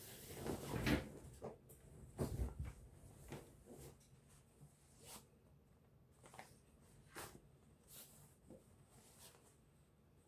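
Wax-print cotton fabric being handled and laid out on a wooden table: rustling and soft thumps, loudest in the first few seconds, then scattered faint rustles and taps.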